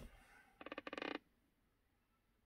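Handheld TPMS tool giving a short buzzing beep, about half a second long, a second in, after a handling knock at the very start.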